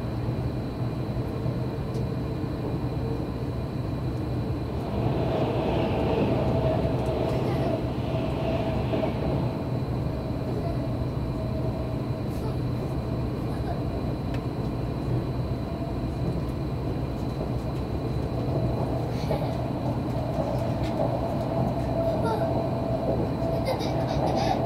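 Running noise inside an Odakyu limited express train car at speed: a steady rumble and hum, with a steady humming tone coming in and the noise growing louder about five seconds in.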